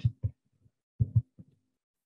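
A few short, soft low thuds separated by dead-silent gaps, two of them close together about a second in.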